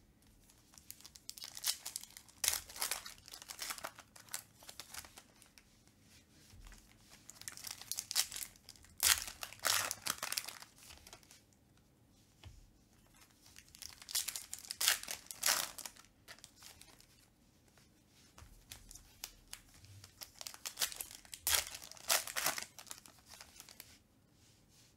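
Foil wrappers of 2021 Panini Contenders football card packs being torn open and crinkled by hand, in four bouts a few seconds apart with quiet gaps between them.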